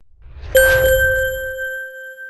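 Logo sting sound effect for a channel's closing ident: a low whooshing rumble swells up, then a bright, bell-like ding strikes about half a second in and rings on steadily.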